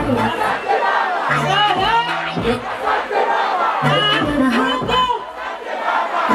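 Concert crowd screaming and cheering over loud stage music, with a bass beat that comes back about every two and a half seconds.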